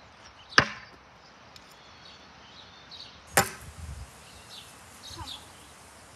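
Two throwing knives striking a board target, each a sharp thwack, the second about three seconds after the first and followed by a brief low rattle.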